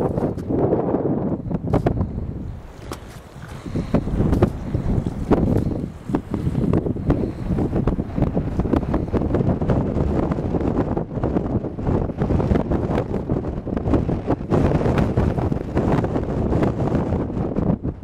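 Wind buffeting a handheld camera's microphone in loud, rumbling gusts, easing briefly about three seconds in.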